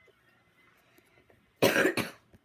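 A single loud cough close to the microphone about a second and a half in, after faint room tone.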